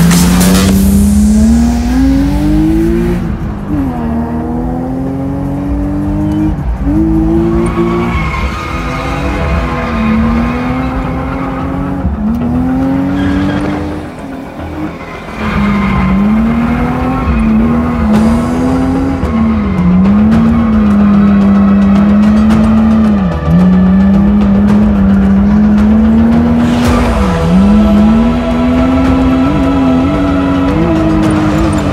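Drift car's engine heard from inside the cabin, revving hard with its pitch climbing and dropping over and over as the throttle is worked through a drift run, with tyres squealing. The revs fall briefly about halfway, and in the second half they hold high with a few quick sharp drops.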